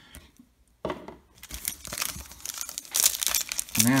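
Crinkling and tearing of a baseball card pack's plastic wrapper being torn open by hand. It starts about a second in and grows louder toward the end.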